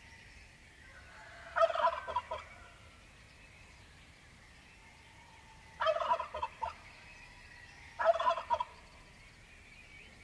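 A turkey gobbling three times, each gobble a short, rapid rattle. The first comes about a second and a half in, and the other two come close together near the end. Faint birdsong runs steadily behind them.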